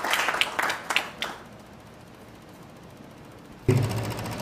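Audience applauding, a dense patter of many hands clapping that dies away about a second and a half in.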